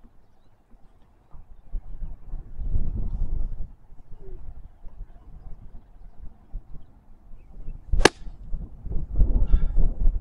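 An iron golf club strikes a golf ball off the fairway turf, taking a divot: one sharp crack about eight seconds in. Wind rumbles on the microphone in gusts before and after the shot.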